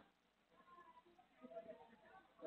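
Near silence, with a few faint wavering sounds in the second half.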